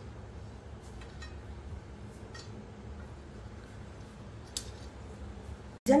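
Soft handling sounds of hands folding and crimping dough on a steel plate: a few faint, light clicks over a steady low background hum.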